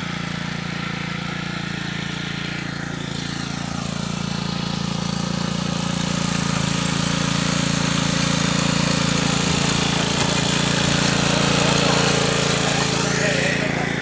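Small petrol engine of a Honda-branded mini power tiller running steadily while its rotary tines churn dry soil. It gets louder through the middle, as the tines dig in under load.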